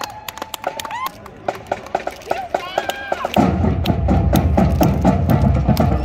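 Marching band at a parade: a run of sharp wood-block-like clicks over crowd voices, then about three and a half seconds in the band comes in loudly with heavy drums.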